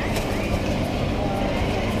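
Steady low rumble of indoor background noise with faint, indistinct voices in it.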